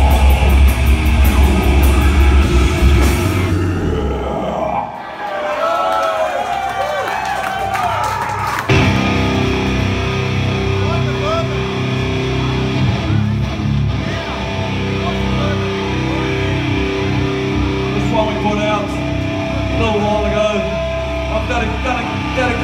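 A heavy metal band with distorted guitars and drums finishes a song, which stops about three seconds in, followed by a crowd cheering and shouting. From about nine seconds on, electric guitars hold steady, low droning tones through the amplifiers between songs.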